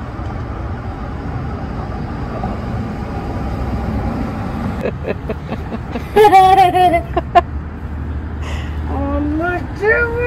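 High-pitched voices calling out twice, briefly about six seconds in and again in a drawn-out call near the end, over a steady low rumble.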